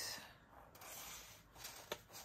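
Faint rustling of a stack of 6x6 designer paper sheets being fanned and flipped through by hand, with a couple of light paper clicks near the end.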